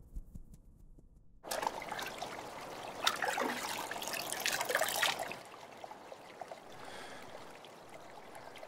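Water trickling and splashing around a large conch shell held in shallow river water. The sound starts suddenly about a second and a half in and dies down to a faint wash about five seconds in.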